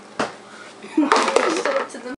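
A single sharp knock, then about a second of children's unworded, breathy vocal noise and rustling, typical of laughter.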